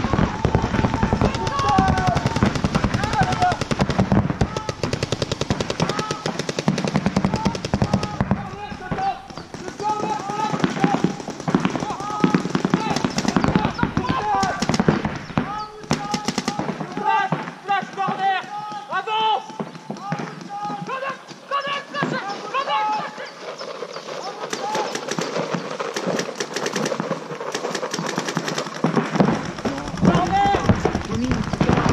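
Paintball markers firing rapid strings of shots during a game.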